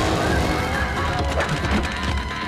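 Action background music, with a steady rumble of sound effects underneath and a few short clicks.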